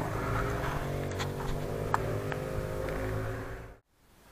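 Ursus C-360's four-cylinder diesel engine idling steadily, heard close up from under the tractor; the sound cuts off abruptly near the end.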